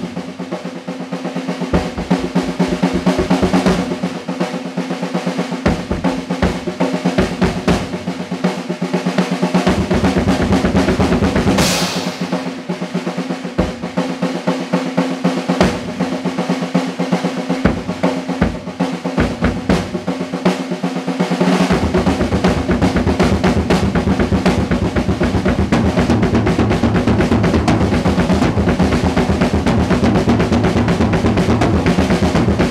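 Acoustic drum kit solo played with sticks: fast rolls and fills on the snare and toms, with the bass drum coming in short runs. A cymbal crash rings about twelve seconds in, and from about two-thirds of the way through the bass drum plays a continuous rapid pattern under the rolls.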